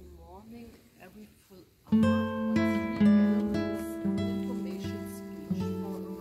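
Faint voices, then acoustic guitar music starting suddenly about two seconds in: plucked chords that ring on, a new one about every half second.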